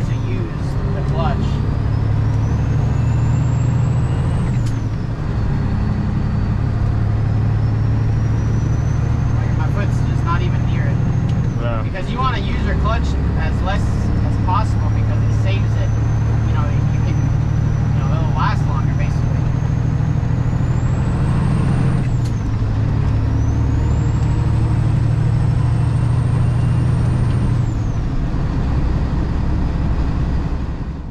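The diesel engine of a Freightliner Classic semi truck, heard from inside the cab as it pulls up through the gears. A high whine climbs with engine speed and falls away at each upshift, about four times. The shifts are floated without the clutch.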